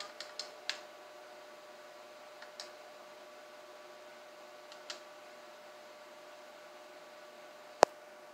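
Small button clicks from working the playback controls: a quick run of light clicks at the start, two or three more scattered through the middle, and one sharp loud click near the end. A faint steady electronic hum sits underneath.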